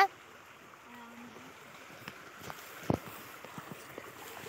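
Shallow creek water flowing faintly over stones, a steady low rush, with soft rustling steps through grass and one sharp knock just before three seconds in.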